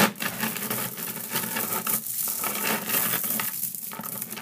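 Thousands of Zen Magnets neodymium ball magnets clicking, crackling and grinding against each other as a large magnet-ball structure is crushed by hand. It makes a dense, continuous rattle that is loudest at the first collapse.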